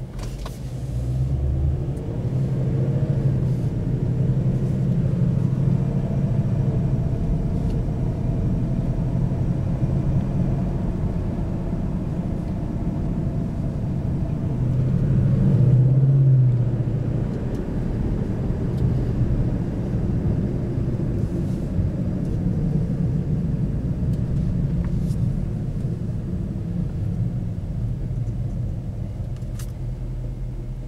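2011 Ford Mustang California Special's V8 engine under way, heard from inside the cabin. It climbs in pitch as the car pulls away in the first few seconds, swells loudest as it accelerates around the middle, then settles to a steady cruise.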